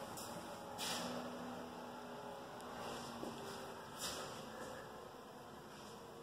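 Quiet room tone with a faint steady hum, and two brief soft rustles, about a second in and again about four seconds in.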